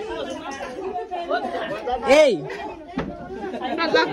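Several people chattering at once, with indistinct overlapping voices; one voice rises and falls loudly about two seconds in.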